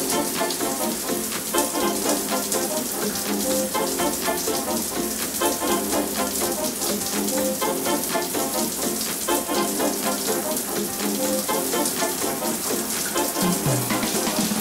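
Shower spray running steadily, a hiss of falling water, with background music playing a run of short notes over it.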